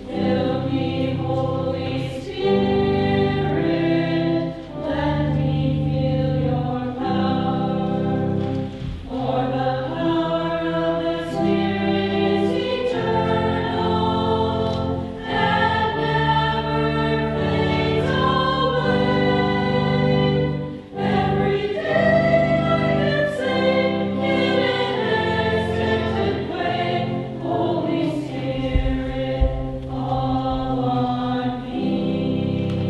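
Choir singing a hymn in a church, held chords over a sustained low accompaniment, with short breaths between phrases about nine and twenty-one seconds in.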